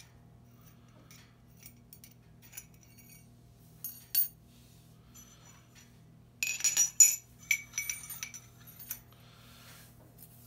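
Stainless steel torch tubes clinking together and being set down on a countertop. There is a single light tap about four seconds in, then a run of ringing metal clinks from about six to nine seconds, over a faint steady low hum.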